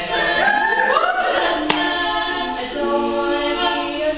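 Female a cappella group singing in close harmony, several voices sliding upward together in the first second or so, then holding chords. A single sharp click cuts through partway in.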